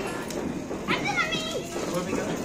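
Children and other people shouting and chattering in the background, over the steady hiss of a ground fountain firework (anar) spraying sparks.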